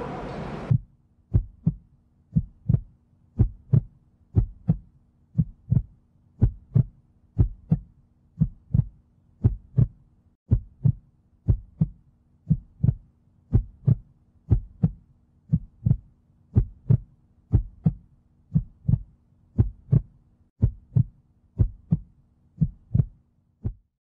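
A heartbeat sound effect: steady low thumps at about one and a half beats a second over a faint hum, stopping shortly before the end.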